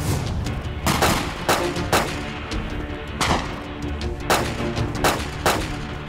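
A string of gunshots, about eight sharp reports at uneven intervals of half a second to a second, over dramatic background music.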